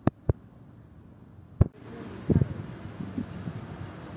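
Three sharp, short clicks in the first second and a half, then a steady outdoor background hiss with faint low sounds.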